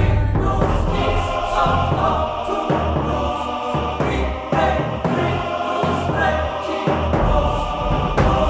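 Background music: a choir-like vocal held in long notes over a heavy, pulsing bass line.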